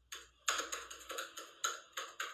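A quick, irregular run of light taps and clicks, several a second, like fingers or nails typing on a phone's touchscreen.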